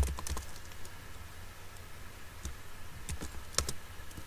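Typing on a computer keyboard: a quick run of keystrokes at the start, a sparser stretch of a few taps for about two seconds, then another quick run of keystrokes near the end.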